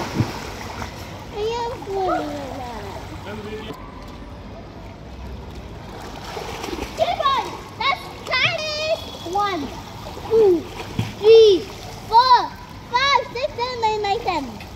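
Splashing water from a child swimming front crawl in a pool, with children's voices calling out in short high-pitched shouts through the second half, loudest near the end.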